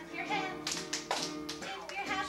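Violin playing a folk-dance tune with children's voices along with it. A few sharp hand claps come around the middle.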